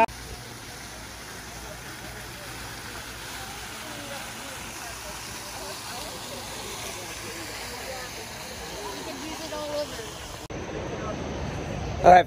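Outdoor ambience at night: a steady hiss with faint, distant voices. The background changes abruptly about ten and a half seconds in.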